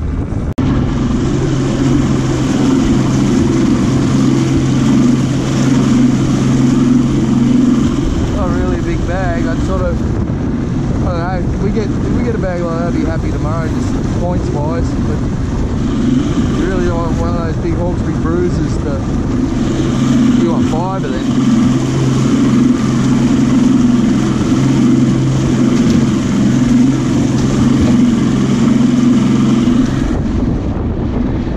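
Mercury OptiMax Pro two-stroke outboard running at speed, with water rushing past the hull and wind noise. Its steady hum breaks up for a stretch in the middle and settles again about two-thirds of the way through.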